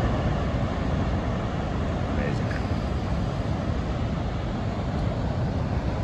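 Steady low roar of heavy ocean surf breaking below, mixed with wind rumbling on the microphone.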